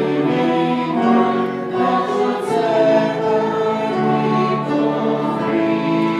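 Congregation singing a slow hymn together, accompanied by piano, violin and trumpet.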